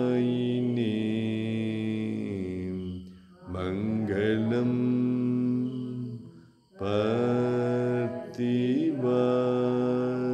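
A voice chanting Sanskrit mangalam verses in long, held, melodic notes, breaking off briefly about three seconds in and again just before seven seconds.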